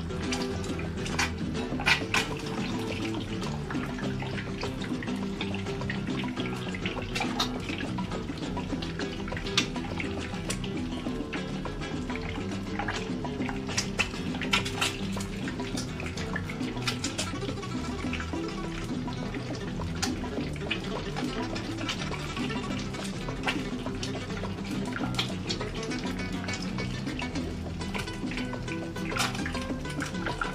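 Background music over the irregular crackle and spitting of an egg frying in hot oil in a frying pan.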